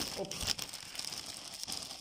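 Clear plastic bag crinkling and rustling as it is handled and pulled open by hand, with small irregular crackles.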